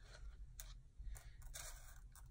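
A few faint clicks and scrapes of small acrylic rhinestones being stirred and picked through by hand in a container.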